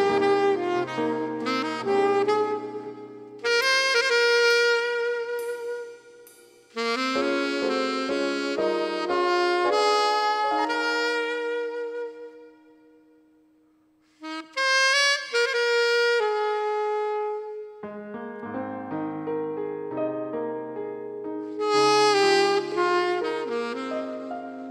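Saxophone playing a slow ballad melody over an accompaniment track with a low bass line. About twelve seconds in, the music fades almost to nothing, and the saxophone comes back in about two seconds later.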